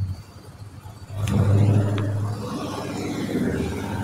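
A car's engine running close by, rising about a second in and then slowly fading, as a car moves through a parking lot.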